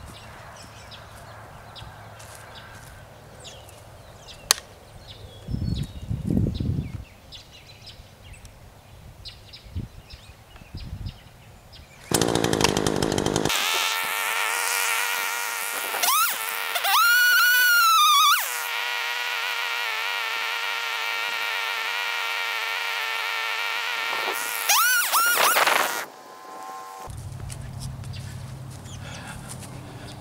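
A chainsaw starts about twelve seconds in and runs at high speed with a steady buzzing whine while it cuts a sapling. Its pitch swings up and down twice as it bogs and revs in the cut, then it stops abruptly a few seconds before the end. Before it starts there is only faint outdoor background.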